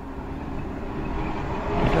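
Street traffic picked up by a CCTV camera's built-in microphone: a single-deck bus approaching, its engine and road noise growing steadily louder.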